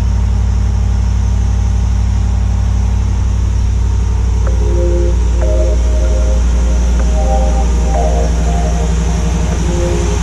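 Pickup truck engine idling with a steady low rumble. Background music comes in over it about halfway through, a simple melody of notes.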